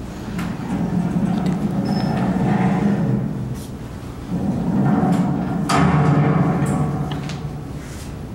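Soundtrack of a projected video artwork played over a room's speakers: two long swells of low, echoing rumble, each a few seconds long, with a few sharp clicks.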